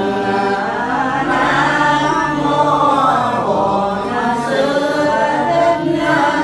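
A group of voices chanting a Buddhist prayer together, in a steady, drawn-out unison without pause.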